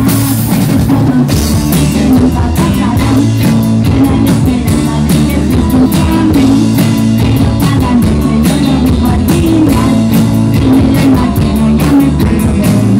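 Live pop-rock band playing a steady, driving beat on drum kit with electric bass and guitars, women's voices singing over it.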